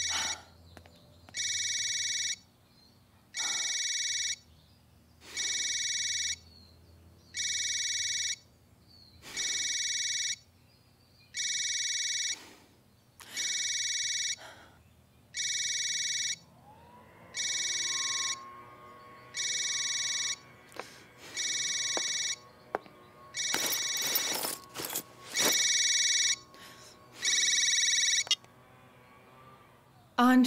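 Mobile phone ringing: an electronic ringtone about a second long, repeating every two seconds, some fourteen times, until it stops just before the end when the call is answered. A few faint clicks and rustles come between the rings in the second half.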